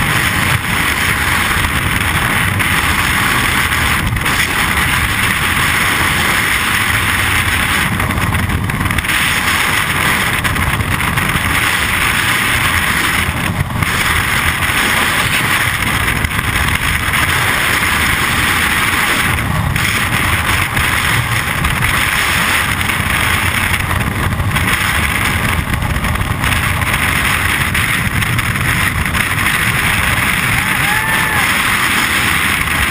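Loud, steady wind rush of skydiving freefall blasting over a body-worn camera's microphone.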